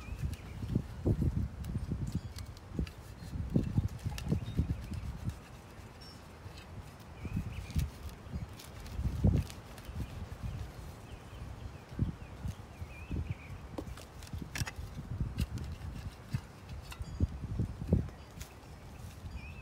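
Hand trowel digging into mulched garden soil: irregular soft thuds and scrapes as soil and wood-chip mulch are dug and pushed aside, with a few sharper clicks.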